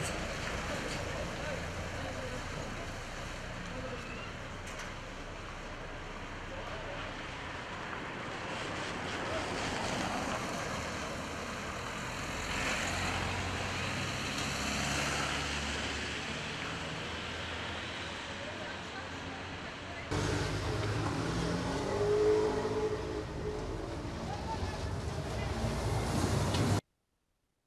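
Street sound: cars and a truck driving past, with people talking in the background. The sound changes abruptly about twenty seconds in.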